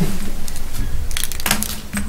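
Crackling handling noise close to a microphone: a cluster of sharp rustles and clicks a little over a second in, with fainter ones before it, then a brief hesitation sound.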